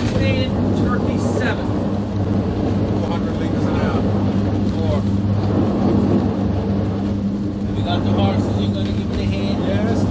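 Steady low engine drone heard inside the wheelhouse of a 23 m XSV20 powerboat running at about 46 knots, with indistinct voices over it at times.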